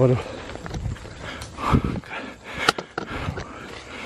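Footsteps and the rustle of grass and leaves as people set off walking along a forest trail, with a sharp click about two-thirds of the way in.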